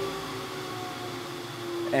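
Shop dust collector shutting off after its 15-second run-on delay, the motor and impeller winding down with a faint whine that falls in pitch.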